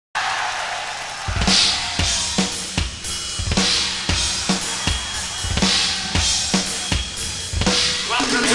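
Rock drum kit played live, alone: a steady beat of bass drum and snare with a crash cymbal hit about every two seconds, kicking in about a second in.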